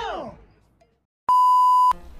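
A loud bleep: a steady 1 kHz tone about half a second long, starting and stopping abruptly. It comes just over a second in, after a held high note dies away, sliding down in pitch, in the first half second.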